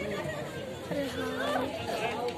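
Indistinct background chatter: several people talking at a distance, with no clear words.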